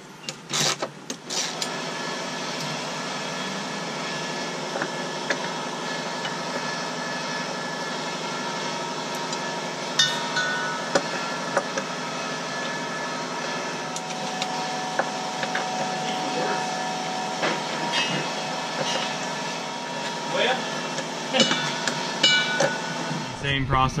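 Hand tools clicking and clinking on steel bolts and a driveshaft safety-loop bracket, a scattered run of short metallic ticks with a few brief ringing clinks, over a steady background hum.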